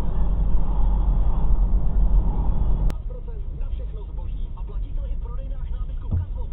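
Car cabin road and engine noise, a steady low rumble, which cuts off abruptly with a click about three seconds in. After that, quieter cabin noise with faint talking.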